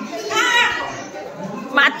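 Voices in a large room: a child's high-pitched voice calls out about half a second in, and people start talking again near the end.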